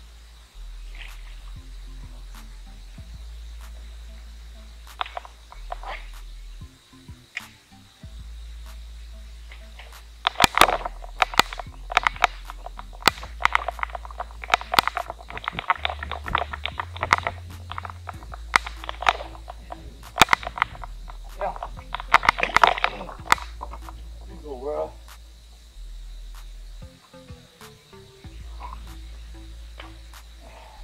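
Background music with a low bass line stepping between notes. From about ten seconds in to about twenty-four seconds, a dense run of loud, sharp splashes and clicks over it as a hooked bass thrashes at the surface while being reeled in.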